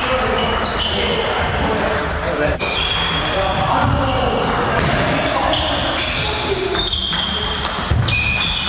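Table tennis rally: the celluloid ball clicks off the bats and the table, and sneakers make short high squeaks again and again on the hardwood floor.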